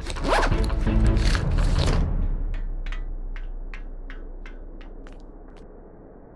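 A loud rasping sweep for about two seconds, then a slowly fading tone with soft ticks about two and a half times a second: a sound-design effect over the film's score.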